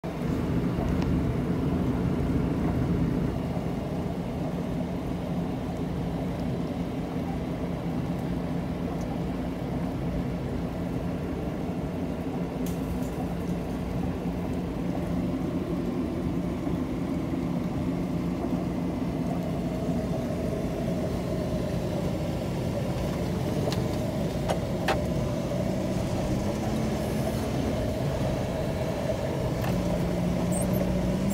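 JCB 540-140 Loadall telehandler's diesel engine running steadily, heard from the cab, its engine speed rising slightly near the end.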